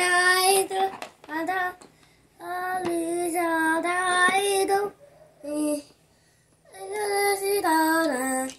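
A young boy singing in a high voice: held notes in several short phrases, with brief pauses between them and a longer break in the middle.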